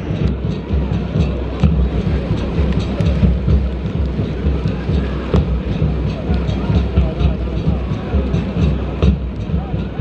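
Stadium crowd noise from the stands: a dense, loud din with many short sharp hits scattered through it.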